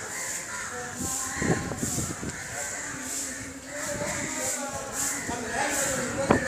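People talking in the background, their words not clear, over street ambience, with a faint high-pitched pulsing chirp that repeats roughly once a second.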